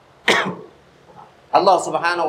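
A man coughs once, a single short cough into his fist, about a quarter second in.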